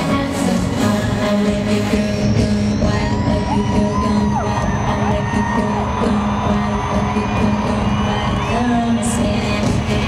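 Live dance-pop music played loud over a stadium sound system and recorded from the audience, with a female vocal over a steady electronic beat. A high rising sweep comes in about two seconds in.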